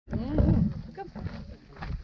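A person's loud, drawn-out vocal exclamation, rising and falling in pitch for about half a second, followed by quieter short voice sounds over low rumble on the microphone.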